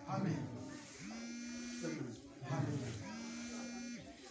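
Rhythmic chanting voices: a steady held note about every two seconds, each followed by a short spoken or sung phrase, in a regular repeating cycle.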